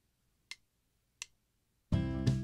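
Two short mouse clicks in near silence, then near the end a Band-in-a-Box generated backing track starts playing abruptly: fingerpicked acoustic guitars over electric bass and drums.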